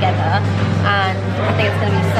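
Speech over a steady low hum.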